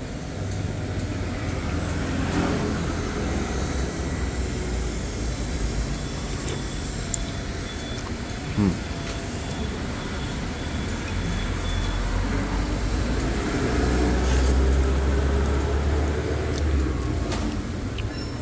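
Road traffic passing close by: a steady low engine rumble that swells louder as a vehicle goes past near the end, with a brief sharp sound about halfway through.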